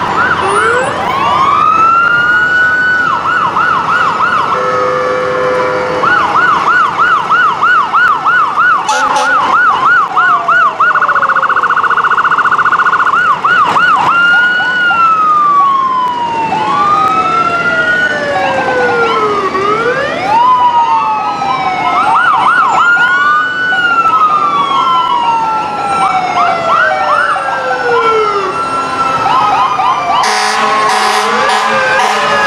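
Several fire-apparatus electronic sirens sounding at once as the trucks pass, overlapping and cycling through their tones: a rising wail at the start, a fast warbling yelp through the middle, a very rapid piercing warble for a couple of seconds, then long slow falling wails. A brief steady lower tone joins about five seconds in.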